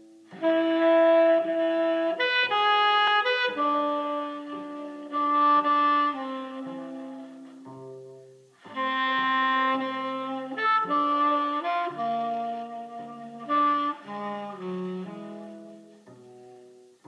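Saxophone music from a 78 rpm record played through Acoustic Research AR-1 loudspeakers: melodic saxophone phrases over lower accompanying notes, with a short break about eight and a half seconds in.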